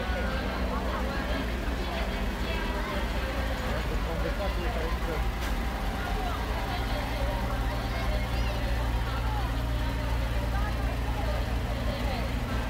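Crowd chatter over a steady low engine rumble from parade vehicles, the rumble growing a little steadier about halfway through.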